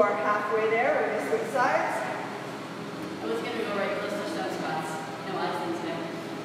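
A person talking, in two stretches with a short pause a little past the middle; no other sound stands out.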